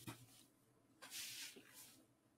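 Near silence: a faint click at the very start, then a brief soft hiss about a second in.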